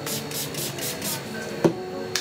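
Small pump spray bottle of hand sanitizer sprayed onto a hand several times in quick succession, a string of short hisses, followed by one sharp click about a second and a half in.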